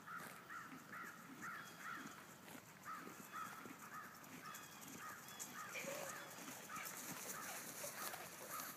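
Faint animal calls, short and repeated about twice a second.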